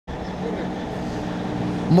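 Steady low hum of a running motor vehicle, with traffic noise.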